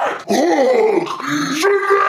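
A man roaring and growling in a monster voice, in a few drawn-out cries that rise and fall in pitch.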